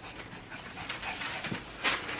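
Paper signs rustling and crackling as they are handled and lifted, with a sharper crackle near the end.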